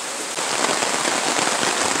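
Torrential downpour: heavy rain falling steadily, with many individual drop hits close by.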